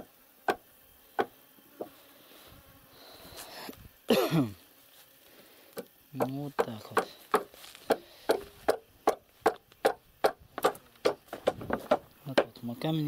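A short vocal sound, falling in pitch, about four seconds in, and a few brief voiced sounds a couple of seconds later. The rest is sharp knocks or taps, a few scattered ones early on and then a quick irregular run of them, about three a second, in the last five seconds.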